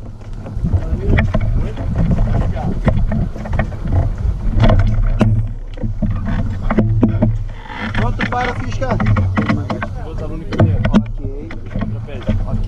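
Wind buffeting a microphone mounted on a hang glider, a steady low rumble, with frequent short knocks and clatter from the glider's frame as the crew shift on the launch ramp, and some muffled voices.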